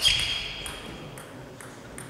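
Table tennis ball struck with a bat: one sharp click with a short high ring that fades over about a second, followed by a few faint light clicks.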